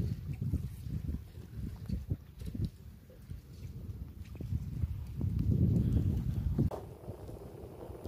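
Wind buffeting the phone's microphone in uneven gusts, a low rumble that grows stronger about five seconds in.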